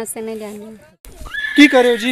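People's voices: long held vocal sounds at a steady pitch, then a short break about a second in, followed by louder voices with a high rising call.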